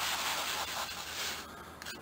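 WD-40 Big Blast aerosol can spraying: a steady hiss that tapers off and stops about one and a half seconds in.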